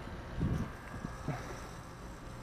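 Faint, steady low outdoor rumble with wind on the microphone, and a brief faint low sound about half a second in.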